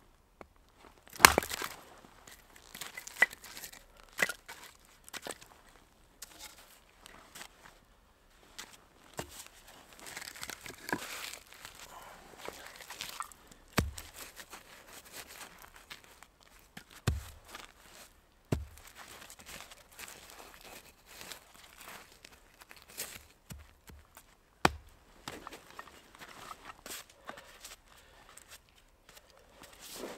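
Axe splitting firewood: a series of sharp, irregularly spaced strikes of the blade into wood, the loudest about a second in. Between the strikes come the rustle and knock of split pieces and clothing being handled.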